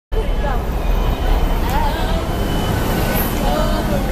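Busy urban ambience at a metro station entrance: a steady low rumble of traffic with indistinct chatter of people nearby.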